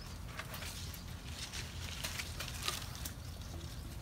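Faint rustling and small crackles of grape leaves and vine stems being handled as ripe muscadine grapes are picked by hand, over a steady low background rumble.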